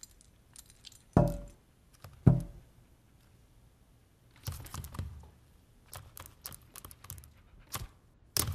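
A small dog jumping on a hard floor: two heavy landing thumps a little over a second apart are the loudest sounds, followed by lighter rattles and clicks from the metal tag jingling on its collar.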